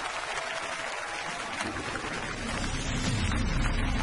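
Studio audience applauding, a dense even patter of clapping. About a second and a half in, music with a low bass comes in underneath, and the clapping thins toward the end.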